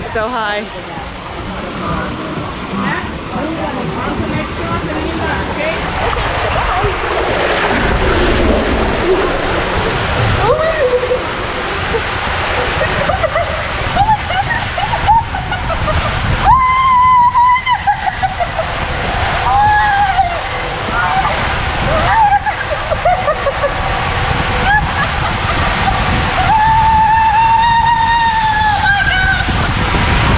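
Water rushing and sloshing around a rider sliding down an enclosed tube water slide. A woman screams again and again through the second half, with long held cries a little after the middle and near the end.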